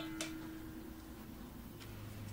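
Light click of a metal ladle against a stainless steel bowl, with a faint metallic ring fading away over the first second; otherwise quiet room tone.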